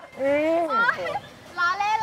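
Speech only: a long drawn-out exclamation "o-oh" with a bending pitch, then another voice starting a word near the end.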